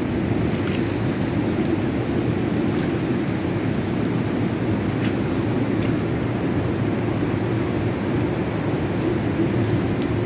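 Steady low roar of ocean surf reverberating among coastal rocks, even and unbroken, with a few faint clicks over it.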